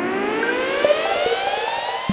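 A synthesized rising tone with many overtones, climbing steadily in pitch like a siren: a build-up sound effect in a channel intro.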